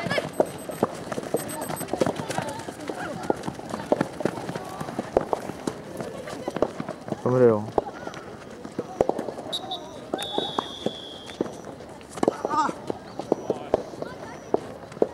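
Outdoor youth soccer match sound: frequent short knocks and thumps, with shouted calls at the start, a loud shout about seven seconds in, and another near the end. About ten seconds in, a high steady whistle tone sounds for about a second and a half.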